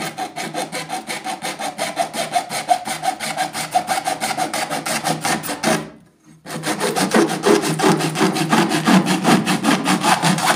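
Bare hacksaw blade, held by hand, sawing back and forth into a plastic jug in quick short strokes, about six a second. The sawing stops briefly about six seconds in, then starts again louder.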